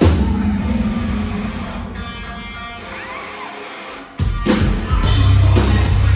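Live rock band with electric guitar and drum kit: a hard hit on the beat, then the music drops to a ringing, fading sound for about four seconds. The full band comes back in suddenly with heavy drums and guitar.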